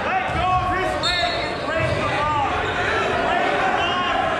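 Several voices shouting and calling out over one another in a large, echoing gym, with a few dull thuds underneath.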